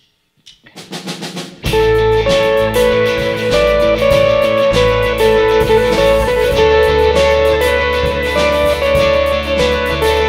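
A live worship band with guitars and drums starting a song: a short swell builds up, and the full band comes in loudly about a second and a half in, playing steadily on.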